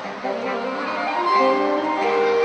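Saxophone quartet playing, several saxophones holding sustained notes together in chords and growing louder about a second in.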